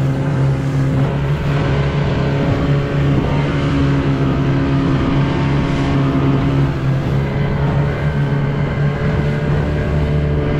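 Small outboard motor on an inflatable dinghy running steadily at speed, a constant engine tone, with water rushing along the hull.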